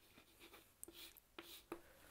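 Chalk writing on a chalkboard, heard as a few faint taps and short scratches as a word is written and underlined.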